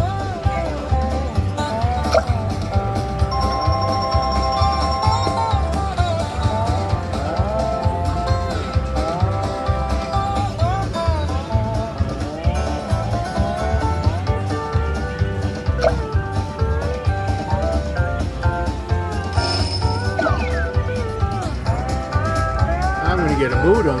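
Reel 'Em In! Catch the Big One 2 slot machine playing its country-style bonus music during free spins, with a steady beat and a melody on top.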